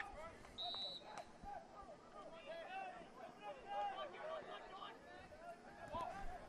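Faint, distant shouting of lacrosse players calling out on the field, scattered throughout, with a short high tone about half a second in.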